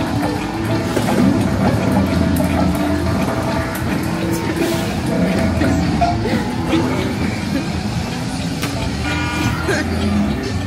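Busy arcade din: background music and electronic game sounds with crowd chatter, and short knocks from balls landing on the Let's Bounce game's tile board. Near the end, a fast run of electronic beeps as the game's timer runs out.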